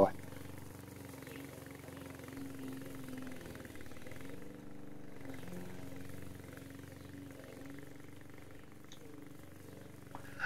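Petrol engine of a Vigorun VTC550-90 remote-control mower running steadily as the mower drives off through long grass. It is a low, even hum that wavers slightly in pitch midway and grows a little fainter toward the end as the mower moves away.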